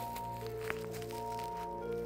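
Background music of slow, held notes layered into a chord, with one brief click partway through.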